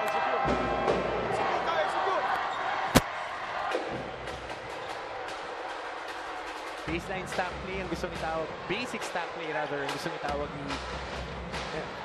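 Basketball arena ambience during a timeout: crowd voices and music over the public address, with one sharp bang about three seconds in and scattered thumps and shouts in the second half.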